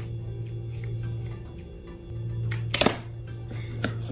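Background music with steady held notes, and a short clatter of knocks from handling the packaging about three quarters of the way through.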